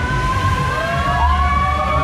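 Fairground ride sound with a pounding bass beat under long, high wailing tones that glide up and overlap, one rising about halfway in.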